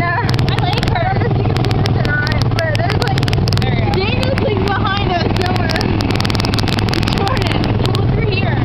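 The small gasoline engine of a Tomorrowland Speedway ride car running steadily under way, a constant low drone, with frequent clicks and rumble from wind and handling on the microphone. Voices come and go over it.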